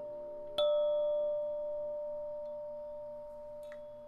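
A single struck bell tone, about half a second in, rings out and slowly fades, over soft, sustained lower tones of meditation music.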